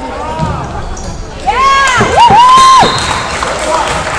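A spectator's loud, high-pitched drawn-out shout, two calls in quick succession about a second and a half in, cheering a free-throw attempt over low gym crowd chatter.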